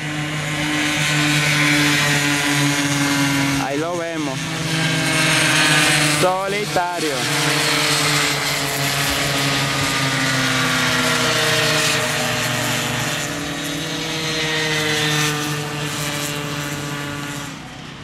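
Small high-revving racing mini-motorbike engines running hard past the track, a buzzy whine whose pitch slides slowly down in the second half. A voice cuts in briefly twice, about four and about seven seconds in.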